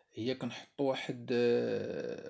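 Speech only: one voice talking, with short pauses between phrases.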